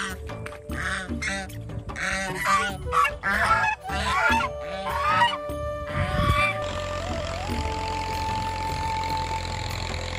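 White domestic geese honking repeatedly for about the first six seconds. After that, background music with a long held note takes over.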